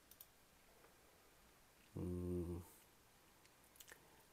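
A few computer mouse clicks, then a short, low hummed hesitation sound from a man (an "mmm" or "yyy") about two seconds in, the loudest thing here, and two more quick mouse clicks near the end.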